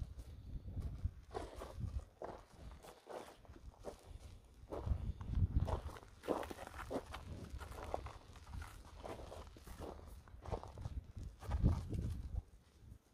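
Irregular footsteps on gravelly dirt: a Senepol bull's hooves and the steps of a person walking close behind it.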